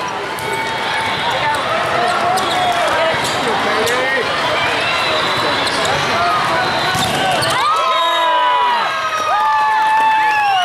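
Volleyball rally in a large, echoing hall: sharp slaps of the ball being hit and bounced, short squeaks of sneakers on the wooden court, and a steady din of many players' and spectators' voices. Near the end, shouts rise as the point is won.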